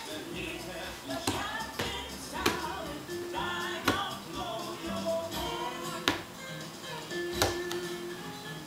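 Music with singing playing, over which small hands slap the top of a leather ottoman about six times, irregularly spaced.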